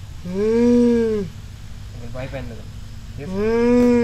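A long, low moaning call that rises and then falls in pitch, heard twice, each about a second long and about three seconds apart.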